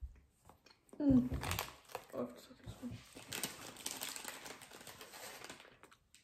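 Snack wrapper crinkling as it is torn open and handled, a dense run of crackles from about two seconds in until near the end, after a brief vocal sound about a second in.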